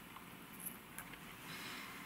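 Faint handling sounds: steel tweezers and fingers pulling half of an old orchid leaf away from the stem, with a couple of soft clicks over a low hiss.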